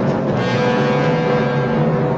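Orchestral film score music: a loud low chord held steady.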